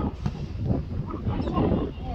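Wind rumbling on the microphone, with scattered shouts and calls from players and onlookers at an outdoor football match.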